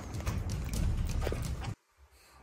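Light knocks and cloth rustling from hands handling a baby monkey's clothes on a bed, which cut off suddenly near the end.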